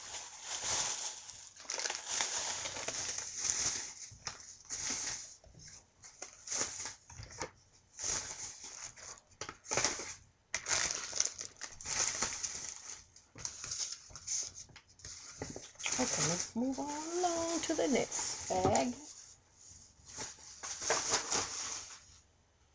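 Plastic shopping bag and packaging crinkling and rustling in irregular bursts as items are rummaged through and handled. About three-quarters of the way through, a brief wavering pitched sound rises and falls over the rustling.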